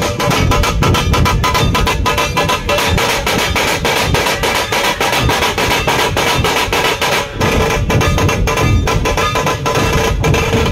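A dhol-tasha drum troupe playing together: tasha drums struck rapidly with thin sticks over large barrel dhols, in a fast, steady, loud rhythm.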